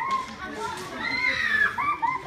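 Raised, high-pitched voices of several people in a crowd calling out, with no clear words.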